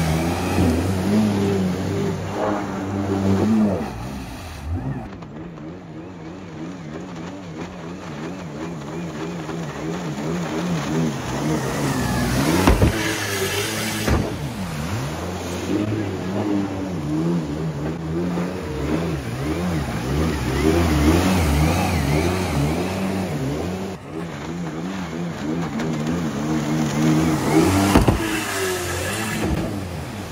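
Stand-up jet ski engine running hard, its pitch rising and falling as the rider throttles on and off through turns. Two short sharp knocks come through, one near the middle and one near the end.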